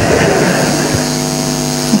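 An audience in a lecture hall laughing together, heard as a steady wash of crowd noise over a steady electrical hum from the sound system.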